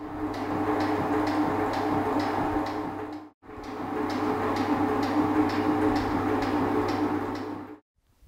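Metal shaper running: its ram strokes back and forth with a tick about twice a second over the steady hum of its drive, as the tool takes cleanup cuts across the end of a small brass plate. The sound cuts out briefly about three seconds in, then carries on.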